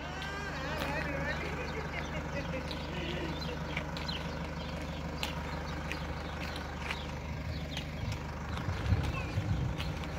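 A steady low hum, with a faint voice in the first second or two and a few low rumbles on the microphone near the end.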